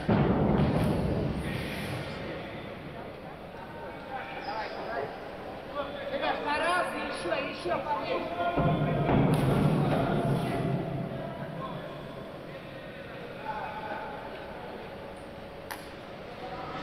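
Divers hitting the water in an echoing indoor diving pool hall: a loud splash right at the start and another about nine seconds in, each dying away slowly, with voices between them.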